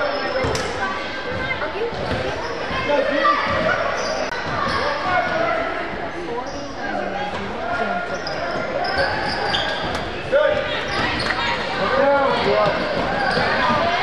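Basketball bouncing on a hardwood gym floor amid the chatter of players and spectators, echoing in the hall, with a sharp knock about ten seconds in.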